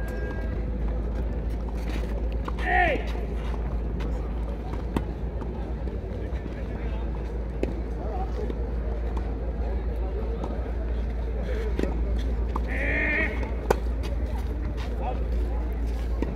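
Outdoor tennis-court ambience: a steady low rumble with distant voices calling briefly twice, about three seconds in and near thirteen seconds, and a few faint sharp clicks.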